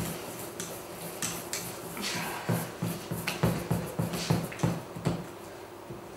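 Wire whisk beating chestnut-flour-and-water batter in a stainless steel bowl, the wires clinking and scraping against the metal in irregular strokes, about two or three a second.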